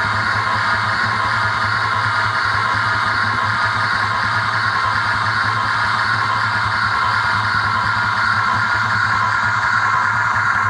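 Live electronic noise music from synthesizers and a mixer: a dense, steady wall of droning noise over a fast low pulse, holding the same texture throughout.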